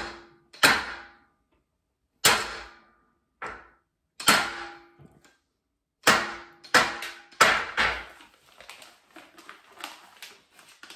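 About eight sharp metal clanks from a steel power rack and barbell, each with a short ring, irregularly spaced, as the bar and the rack's J-hooks are handled; softer, lighter clatter follows near the end.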